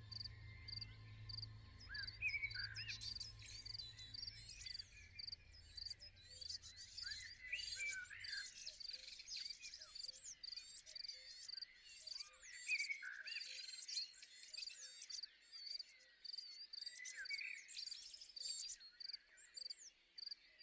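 Birds singing with crickets chirping in a regular pulse. A faint low hum underneath fades away in the first few seconds.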